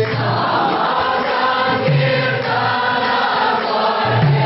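A congregation singing the response in call-and-response devotional kirtan chanting, many voices blended together. The male lead singer's voice breaks in briefly about two seconds in.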